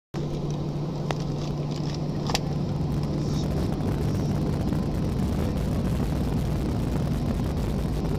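Steady hum of an Airbus A320-family jet's engines and air systems, heard inside the cabin while the airliner taxis, with a constant low drone. Two brief clicks come about one and two and a half seconds in.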